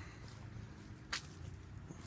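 A single sharp click about a second in, over a faint low steady hum.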